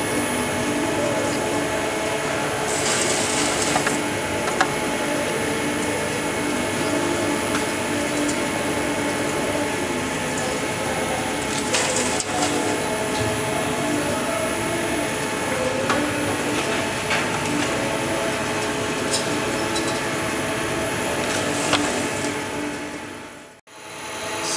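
eGen CR-Alpha pyrolysis unit's machinery running steadily, a mix of motor hum and mechanical clatter. Wood chips are tipped into the feed hopper a few times, each a brief rushing pour, the clearest about halfway through. The sound cuts off abruptly just before the end.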